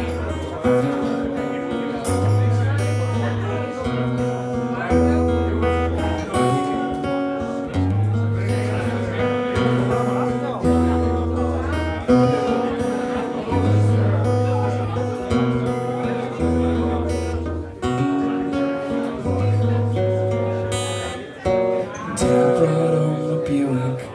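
Solo steel-string acoustic guitar playing the instrumental introduction of a song: repeated chords over a low bass note that changes about once a second.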